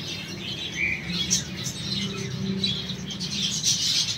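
A flock of small aviary finches chirping, many short high calls overlapping in a busy chatter, over a steady low hum.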